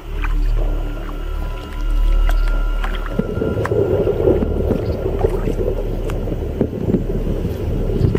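Dark, droning synth background music with low held notes and high sustained tones. About three seconds in, a rough, noisy layer with small clicks joins and stays to the end.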